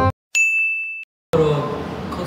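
A single bright ding sound effect: one high note struck sharply and held for under a second before it stops.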